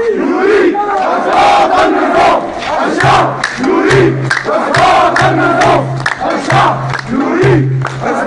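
A large crowd of protesters chanting slogans together in unison, punctuated by sharp, regular beats.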